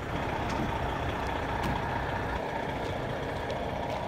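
Fire truck diesel engines running, a steady low drone with no breaks.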